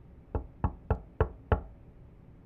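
Someone knocking on a door: five evenly spaced knocks, about three a second, announcing a visitor.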